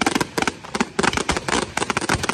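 Fireworks going off in a rapid volley of sharp bangs and crackles, several reports a second, coming thicker and more continuous from about a second in.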